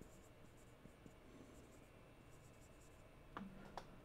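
Faint scratching of a marker writing on a whiteboard, then two soft clicks near the end.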